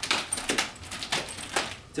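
Chain nunchaku being spun through a rip: the metal chain between the handles rattles and clicks in a quick irregular string of small metallic ticks.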